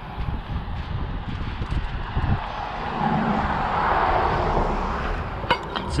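A vehicle passing on the road, its noise swelling to a peak past the middle and then fading, over a steady low rumble. A few light clicks near the end.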